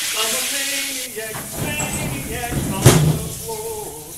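Shower running with a steady hiss of water while a person sings over it, with a sharp knock about three seconds in.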